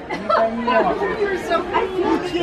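Many people talking at once: a steady hubbub of overlapping background conversation, with no single voice standing out.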